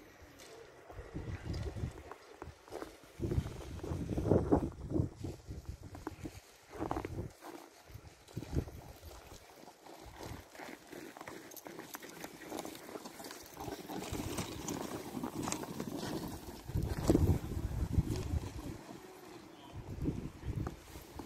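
Sled dogs of a team setting off from a checkpoint, heard among faint voices, with irregular low rumbling thumps that come and go, heaviest about four seconds in and again near the end.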